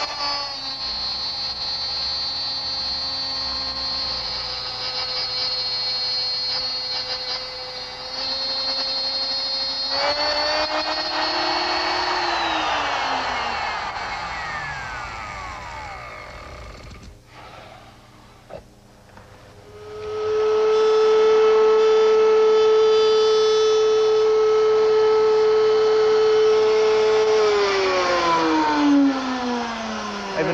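Electric router with a half-inch dovetail bit running steadily as it cuts a sliding dovetail socket in birch, then switched off about twelve seconds in and spinning down, its whine falling in pitch. After a few clicks a router starts again about twenty seconds in, runs louder, and is switched off near the end, its pitch falling as it winds down.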